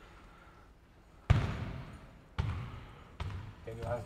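A basketball bouncing three times on a hard court, about a second apart. Each bounce is sharp and rings on in the large hall.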